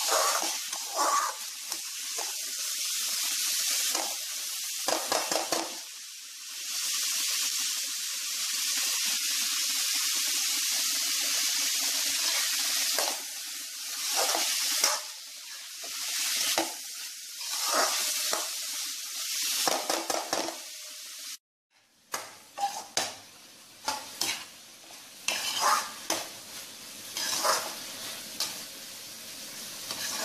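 Chopped vegetables frying in a steel wok, a steady sizzle with the repeated scrape of a metal spatula stirring them against the pan. The sound drops out briefly a little past two-thirds through, after which the sizzle is fainter and the scraping strokes stand out more.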